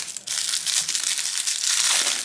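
Crinkly paper wrapper being crumpled and unfolded by hand, a dense run of crackling that sets in a moment after the start.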